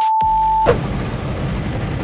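A steady electronic test-tone beep of about two-thirds of a second that cuts off suddenly, followed by background music.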